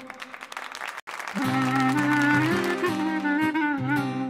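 Instrumental break of an Albanian urban-folk band: a quieter stretch with a light rhythmic beat, then the band comes back in about a second and a half in with a steady, wavering lead melody over accompaniment.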